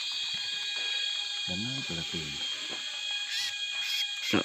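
Steady high-pitched buzzing of rainforest insects, several unchanging tones at once, with a short low murmur of a man's voice in the middle.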